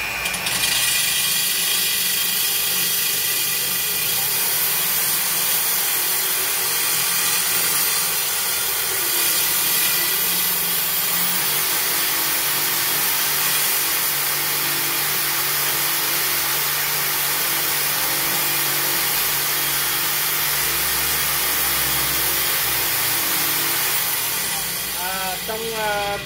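Corded electric drill running steadily, its hollow bit grinding a hole into the wall of a thick glass jar. The bit is packed with wet paper and dipped in water to keep the glass from heating up and cracking.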